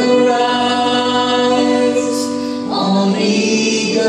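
A man and a woman singing a Christian worship song together live, holding long notes in harmony over band accompaniment, moving to new notes a little under three seconds in.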